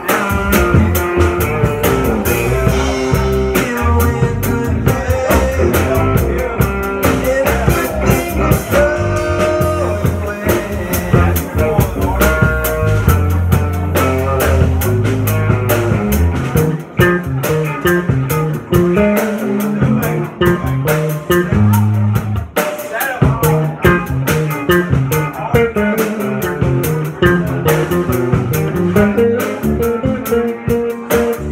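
Live band playing an instrumental passage, with electric guitar, electric bass and drum kit together and no singing.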